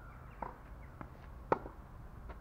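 Tennis ball struck by a racket in a clay-court rally: one sharp pop about one and a half seconds in, with fainter knocks from the ball earlier in the rally.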